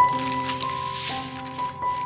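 Background music with held notes that change every half second or so, over a soft crinkle of baking paper and damp filling being handled.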